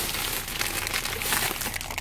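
Thin plastic shopping bags rustling and crinkling as items are rummaged out of them, a dense crackle of small clicks throughout.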